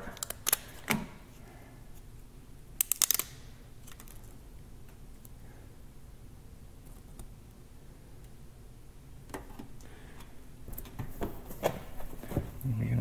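Hand-handling noise at a pickup's tailgate: scattered light clicks and taps, with a quick run of about four sharp clicks around three seconds in and a few more near the end, over a low quiet background.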